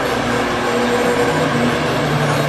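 Unaccompanied male chanting of an Arabic song, holding long notes.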